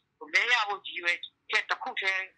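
Speech only: one person speaking Burmese, the voice thin and telephone-like, with a brief pause.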